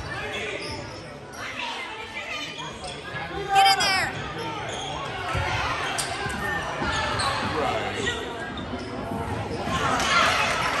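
Gym sounds of a basketball game: a basketball bouncing on the hardwood court, with players' and spectators' voices echoing in the large hall. A short, loud, high-pitched sound comes about three and a half seconds in.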